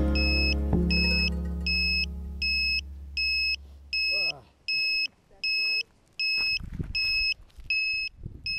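A song's closing chords fade out over the first few seconds while the landed quadcopter's buzzer beeps steadily, a short electronic beep about every three-quarters of a second. Near the end come a few low knocks of handling.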